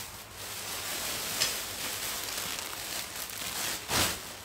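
Fabric rustling as clothes are handled close to the microphone, with a light click about one and a half seconds in and another near the end.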